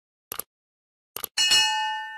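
Sound effect for a subscribe-button animation: two quick pairs of mouse clicks, then a bright bell ding that rings for most of a second and is the loudest sound.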